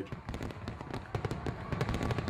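Fireworks going off: a dense run of sharp pops and crackles over a low rumble of bursts.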